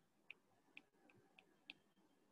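Faint taps of a stylus tip on a tablet's glass screen during handwriting: about five light, unevenly spaced ticks in under two seconds.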